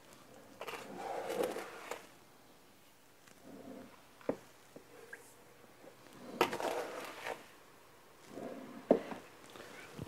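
Soft scraping and rustling of granulated sugar being scooped and poured with a metal measuring cup, in short spells of about a second, with a couple of light clicks from the cup.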